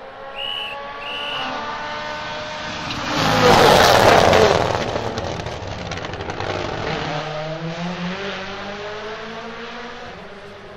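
A Rally1 hybrid rally car's turbocharged 1.6-litre four-cylinder engine at full throttle. It is loudest as the car passes close by about three to four seconds in, with a rush of tyre and road noise, then its pitch climbs again as it accelerates away. Two short high beeps sound near the start.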